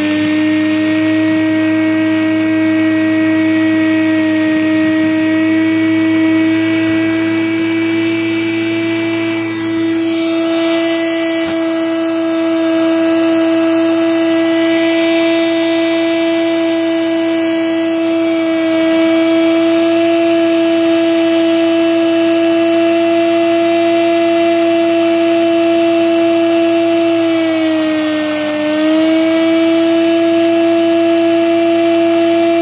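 Vacuum-driven Lego paddle-wheel turbine spinning at high speed: a loud, steady, high-pitched whine over the rush of sucked air. The pitch sags briefly near the end as the turbine slows, then climbs back.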